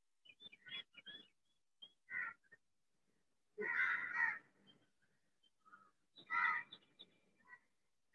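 Crows cawing: a string of short separate calls, with a longer, louder caw about three and a half seconds in and another about six seconds in.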